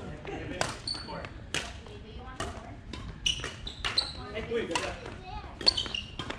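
Badminton rally: sharp racket strikes on the shuttlecock about once a second, with rubber-soled court shoes squeaking on the wooden floor several times, all echoing in a large hall.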